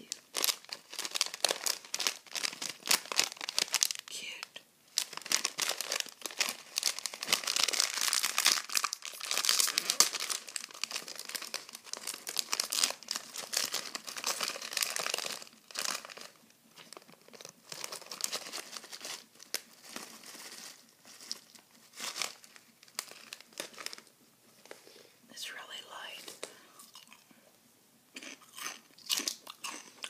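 A crinkly plastic snack bag of puffed veggie chips is torn open and crumpled in the hands, with dense, loud crackling for the first half. After that come sparser, quieter crunches as the chips are eaten.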